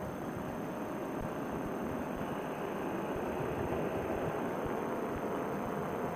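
Paramotor trike in flight: the steady drone of its Vittorazi Moster two-stroke engine and propeller mixed with wind rush, swelling slightly midway.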